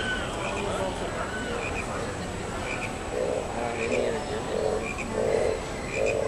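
Frogs croaking in a steady rhythm, about three croaks every two seconds from about three seconds in, with short higher chirps about once a second: the bayou sound effects of a dark-ride lagoon.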